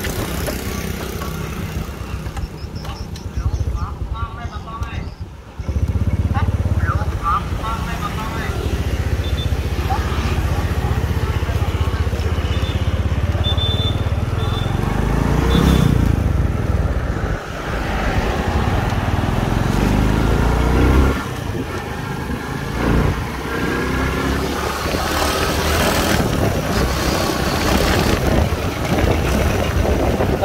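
Honda Wave 110 motorcycle's small single-cylinder four-stroke engine running as it is ridden along the road. It gets louder about five seconds in and rises in pitch as the bike speeds up around the middle.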